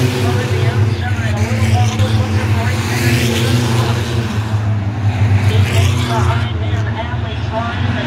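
A pack of Six Shooters class stock cars racing around a short oval, their engines running steadily under load as they pass in a line.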